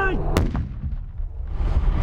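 A single sharp blast from a controlled explosive detonation about half a second in, followed by low rumbling noise.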